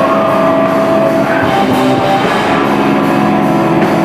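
A hardcore band playing a song live and loud at a steady level, with electric guitars and a drum kit.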